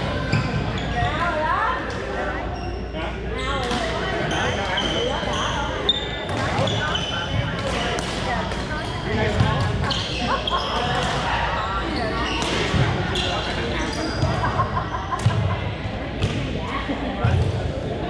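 Badminton rackets striking shuttlecocks in scattered sharp hits, sneakers squeaking briefly on a hardwood gym floor, and players' voices, all echoing in a large hall.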